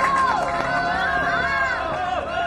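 Audience cheering and calling out, many voices overlapping, with clapping.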